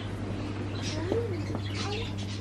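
A few faint calls from caged birds, one rising and falling, over a steady low hum.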